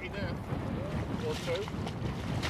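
Rubber boots wading through shallow, partly frozen pond water, splashing and sloshing through broken ice, with brief snatches of voice over the top.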